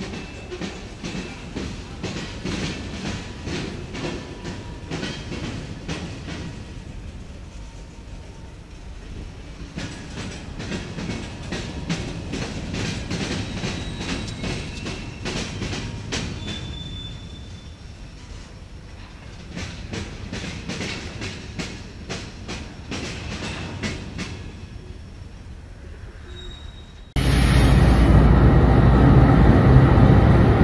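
Freight train covered hopper cars rolling through a railroad diamond crossing, their wheels clacking over the crossing gaps in an irregular run of clicks over a steady rumble. About three seconds before the end it cuts suddenly to a much louder sound of a diesel locomotive close by.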